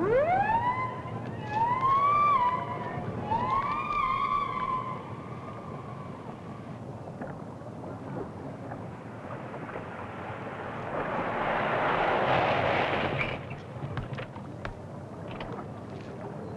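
Siren winding up from low and wailing in three rising-and-falling swells, then fading away. A rushing vehicle noise then swells and dies off about three quarters of the way through.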